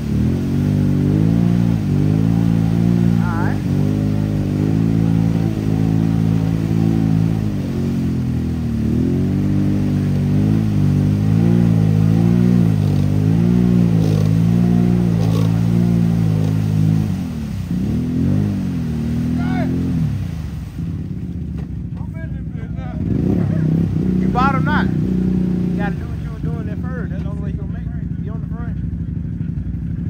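ATV engine revving hard and unevenly under heavy load as the quad spins its tyres through a deep mud hole, the pitch rising and falling with the throttle. A little past halfway the steady revving breaks off into shorter, choppier throttle blips before building again near the end.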